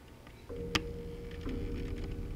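A blues track starting about half a second in: a held note over lower sustained tones, with a sharp click just after it begins.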